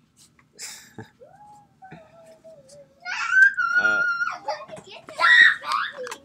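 Young children squealing and shrieking: a long wavering note, then a loud, shrill shriek about three seconds in, and more shouting near the end.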